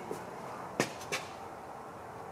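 Steady low background noise in a shop with two short, faint clicks in quick succession near the middle.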